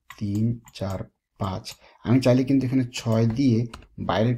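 A man talking, with a few computer keyboard key presses as code is edited.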